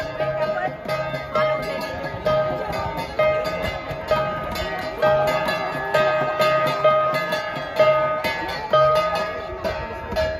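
An ensemble of Cordillera flat gongs (gangsa) struck in a fast, interlocking rhythm, their ringing tones overlapping, with a louder accent about once a second to keep time for the dance.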